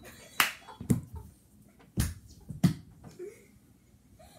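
Four sharp thumps, in two pairs about half a second apart, with about a second between the pairs.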